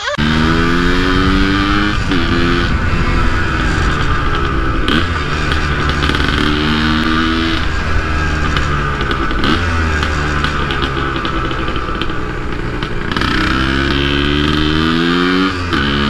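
Yamaha DT 180's single-cylinder two-stroke engine accelerating hard through the gears. The pitch rises and drops back at each gear change, about five times. Its sound is noisy and uncommon, typical of a two-stroke.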